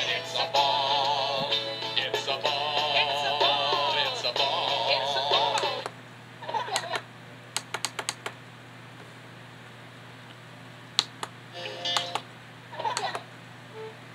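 Music with a warbling sung melody playing from a TV for about six seconds, then cutting out as the video is fast-forwarded. After that come brief chirps of sped-up sound and scattered sharp clicks over a steady low hum.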